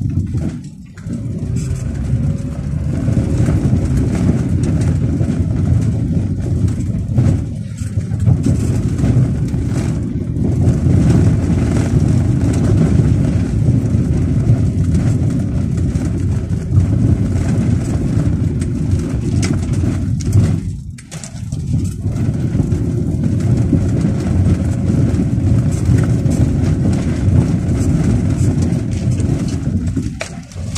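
Car driving along a rough dirt track, heard from inside the cabin: a steady low rumble of engine and tyres, dipping briefly about a second in, around eight seconds in and about twenty-one seconds in.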